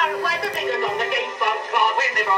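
Music from an early comic duet record: two male singers' voices and their instrumental accompaniment, with the thin sound of an old recording.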